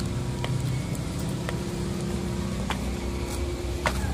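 A motor vehicle engine running steadily with a low hum, with a few faint ticks about a second apart.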